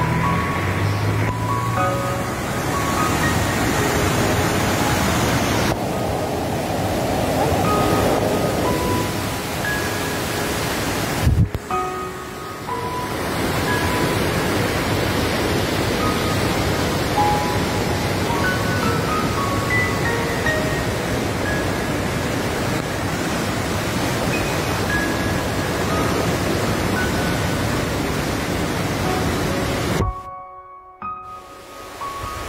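Loud steady rush of a muddy river in flood, its water pouring past, with soft background music of scattered single notes laid over it. The sound breaks off for a moment about eleven seconds in.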